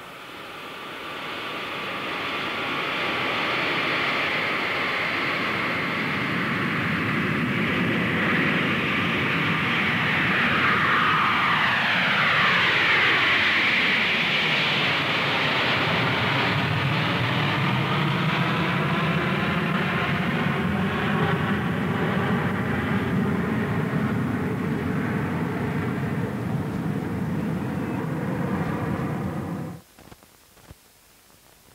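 Jet airliner's engines passing by in flight: a steady jet rush swells in over the first few seconds, and a whine drops steeply in pitch around the middle as the aircraft passes. The sound cuts off abruptly just before the end.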